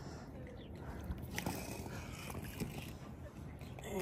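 Quiet dockside background with faint distant voices and a few light ticks scattered through it.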